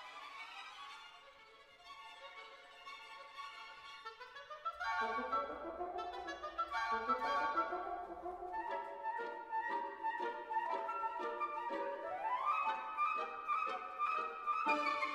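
Symphony orchestra playing a quick, light scherzando passage: flutes, oboes and clarinets trilling and running over pizzicato violins. Soft for the first few seconds, then louder from about five seconds in.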